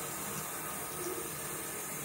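Shower running: a steady hiss of water spraying from a handheld shower head.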